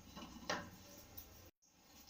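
A single short knock about half a second in, over faint kitchen room tone, then the sound cuts out completely for a moment.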